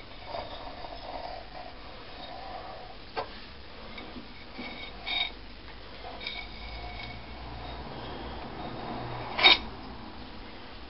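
Kitchen knife cutting round rolled pastry against the rim of a glass pie dish: faint scraping with a few light clicks, and a sharper knock near the end.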